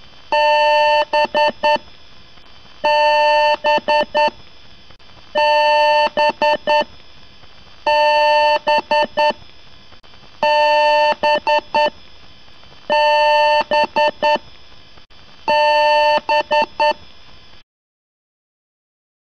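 Computer BIOS power-on beep pattern: one long beep followed by a few quick short beeps, repeated about every two and a half seconds over a faint hiss, stopping abruptly near the end.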